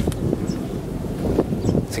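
Wind buffeting the microphone, a steady low rumble, with a few faint voice sounds near the end.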